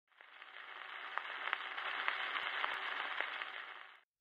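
Surface noise of a 78 rpm shellac record: a faint hiss with scattered clicks and crackles that fades in and cuts off shortly before the end.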